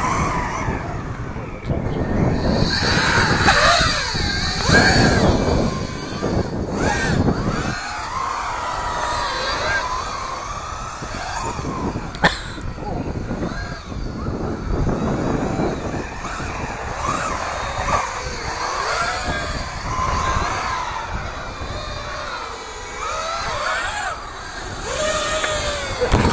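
Electric RC truck's motor whining, its pitch rising and falling as it speeds up, slows and turns, over tyre and wind noise on asphalt.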